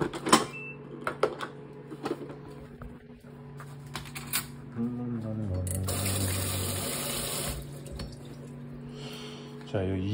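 Clicks as an electric rice cooker's lid is released and opened, the loudest right at the start, then a kitchen tap runs onto a plastic rice paddle in a stainless steel sink for about two seconds.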